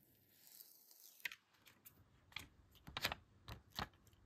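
A foil sticker being peeled off its paper backing by hand: a faint rustle, then a few sharp crinkles and clicks of the paper and foil.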